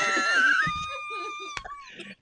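A man's high-pitched, drawn-out squeal of laughter: one long tone that slowly falls in pitch and fades away. A single sharp click comes near the end.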